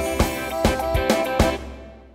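Instrumental backing music of a children's song, with steady tones and drum beats, fading out near the end.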